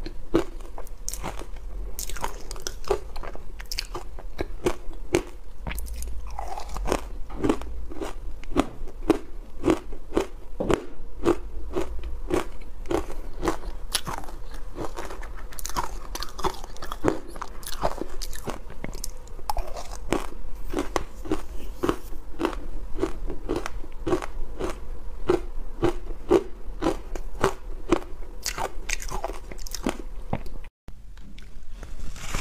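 Ice covered in dry matcha powder being bitten and chewed right at close-up lapel microphones: rapid crisp crunches, several a second, going on without a break.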